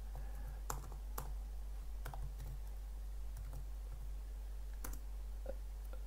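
Computer keyboard: a few separate keystrokes and clicks, spaced out with pauses between them rather than continuous typing.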